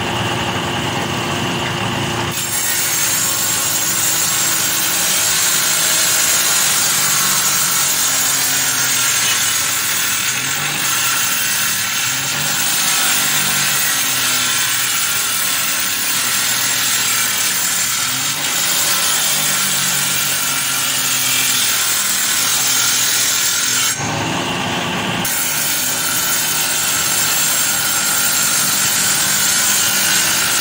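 Jointer-planer cutterhead planing a narrow strip of wood, a loud, steady, hissing cutting noise. It thins out briefly twice, at the start and again about 24 seconds in.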